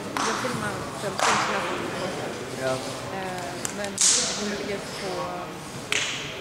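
Indistinct chatter of several people talking in a large hall, with a few short hissing sounds, about a second in and again about four seconds in.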